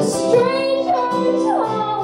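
A woman singing over acoustic guitar, her voice gliding down in pitch near the end.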